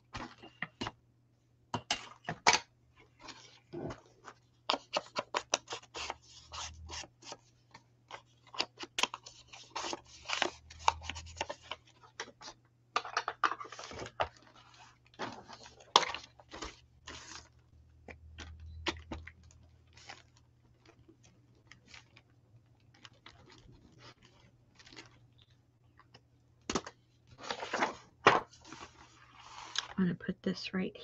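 Paper and card being handled on a craft table: a run of short, irregular rustles, crinkles and taps as sheets and cut pieces are picked up and moved, over a faint steady low hum.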